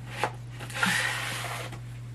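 Padded mailer envelope and its contents being handled and pulled out: a short click about a quarter second in, then about a second of paper and plastic rustling that fades out.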